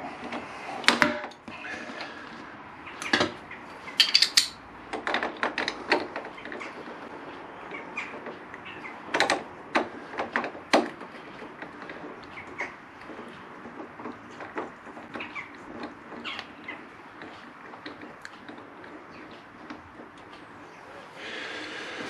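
Irregular metal clinks and knocks of hand tools on a motorcycle's top yoke as a seized bolt is worked out with an extractor tool hammered into its head. The louder knocks come in the first ten seconds or so, and softer clicks follow.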